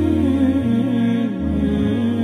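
Slow, chant-like background music: a held melody with gentle glides over a low sustained drone that changes note a couple of times.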